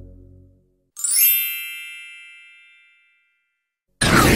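Soft ambient music fades out, and about a second in a single bright chime strikes and rings out, dying away over about two seconds.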